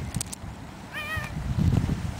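Cat meowing once, a short wavering meow about a second in, over the low shuffling of footsteps on snow that grows loudest near the end.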